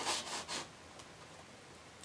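Cardboard mock-up pieces rubbing and scuffing against each other as they are handled and held in place, a few short scrapes in the first half-second or so.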